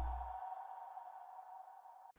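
Steady electronic tone from a logo-animation sound effect, slowly fading away. A low rumble under it dies out about half a second in.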